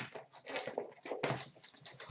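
Crinkling and rustling of the plastic wrap on hockey card packs as they are handled, in several irregular bursts.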